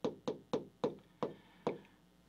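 Stylus pen tapping against a touchscreen's glass while handwriting a word, about six short clicks roughly three a second that stop shortly before the end.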